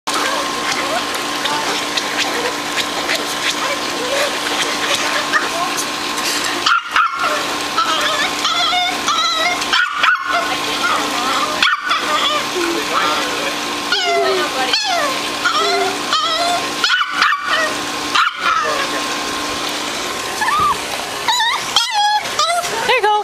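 Small poodle-type dog whining and yapping in a run of short calls that rise and fall in pitch, starting about eight seconds in, over a steady hiss.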